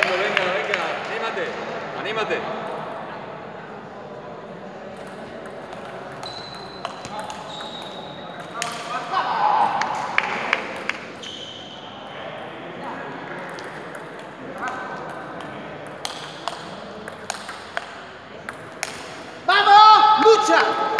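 Table tennis balls clicking on tables and bats in scattered single ticks, with voices in the hall.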